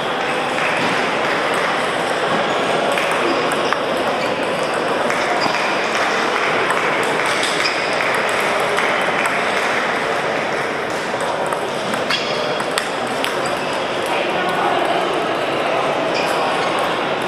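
Table tennis balls clicking irregularly off bats and tables at several tables at once, over a steady murmur of many voices in a large hall.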